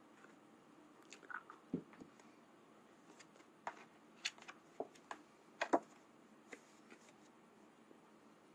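Handling noise from a picture card being fiddled with and brought up to the camera close to the microphone: scattered small clicks and crackles, about a dozen, the loudest pair a little before the end.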